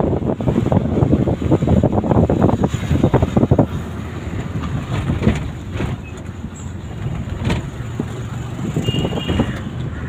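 Wind rumbling and buffeting on the microphone of a fast-moving camera, mixed with low road noise. It comes in irregular gusts, heaviest in the first few seconds and then steadier and softer.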